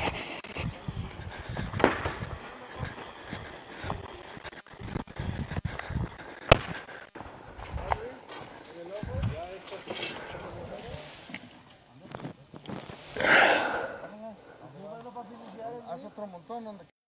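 Faint distant voices with scattered short knocks and clicks, and a brief louder rush of noise about thirteen seconds in.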